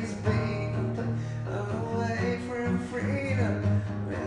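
Music: a song with guitar and a singing voice.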